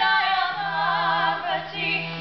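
Two women's voices singing a Sanskrit devotional invocation to the goddess Kali together, the melody gliding between held notes, over a steady harmonium drone.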